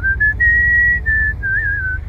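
Someone whistling a short tune: a few held notes, the longest and highest in the first second, then a slightly wavering phrase. A low steady rumble runs underneath.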